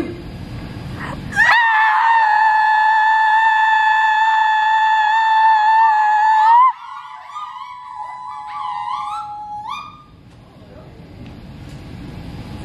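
A group of women holding one long, shrill high-pitched sorority call in unison for about five seconds, then breaking into several short rising calls that trail off near ten seconds in.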